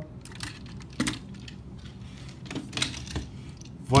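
Plastic toy figures being handled and set down on a tabletop: scattered light clicks and taps, with a sharper knock about a second in.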